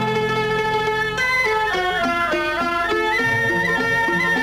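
Instrumental passage of an old Tamil film song, with no singing. A melody moves up and down in steps over held and then repeated bass notes.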